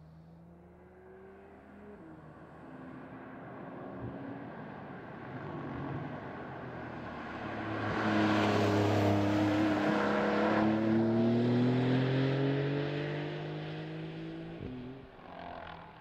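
2020 Porsche 911 Carrera 4S's twin-turbocharged flat-six accelerating, its pitch climbing with quick upshifts of the dual-clutch gearbox. It grows loud as the car passes close, about halfway through, then fades as it drives off, with another shift near the end.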